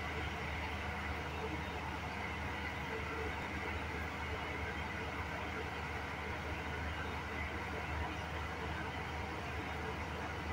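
JLA Smart Wash 16 commercial front-loading washing machine on its rinse cycle: the drum turning with water and laundry sloshing inside, over a steady low hum from the machine.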